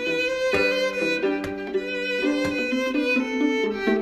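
A string trio of violin, viola and cello playing a bowed pop-song arrangement, several sustained notes sounding together and changing every half second or so, with a few sharp clicks in the accompaniment.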